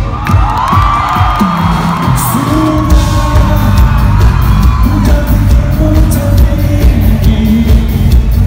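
A live rock band playing loud through the concert sound system with a singer, as heard from the audience, over a steady drum beat. There are whoops and yells from the crowd near the start.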